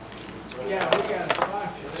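Several sharp clicks and clinks, most of them close together about a second in, as hard fishing lures are picked up and set down among other lures on a tabletop.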